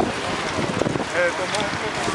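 Wind buffeting the microphone: a steady rough rush of noise, with faint snatches of voices about a second in.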